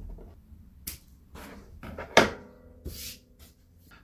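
A few small sharp clicks with light handling noise, the loudest about two seconds in, as the leftover tag end of fishing line is snipped off at a finished snap-swivel knot.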